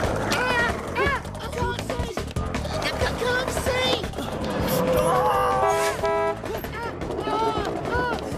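Cartoon soundtrack of background music with short wordless vocal sounds, and a car horn honking twice about six seconds in.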